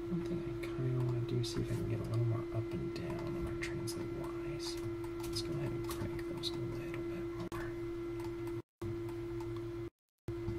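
A steady electrical hum with scattered faint clicks of a computer mouse and keyboard while someone works at a computer; the audio cuts out briefly twice near the end.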